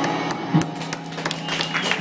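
A live indie rock band's song ending: the last guitar and bass notes ring on more quietly after the full band stops, under scattered sharp claps.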